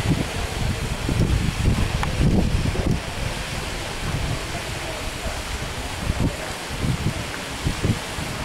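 Wind buffeting the microphone, heavy and gusty for the first three seconds, then lighter with a few short gusts.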